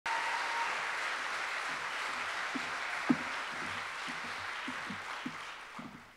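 A large audience applauding, the clapping tailing off in the last second or so, with a single louder knock about three seconds in.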